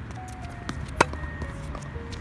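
A single sharp pop of a tennis ball about a second in during a hard-court rally, with a few fainter ball sounds around it. Short, steady melodic tones at changing pitches run underneath.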